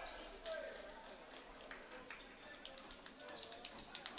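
Faint ambience of a basketball gym during a stoppage in play: distant voices of players and spectators, with scattered light clicks and taps in the second half.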